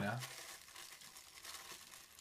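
Faint crinkling and rustling of a thin clear plastic bag being handled and worked open by hand.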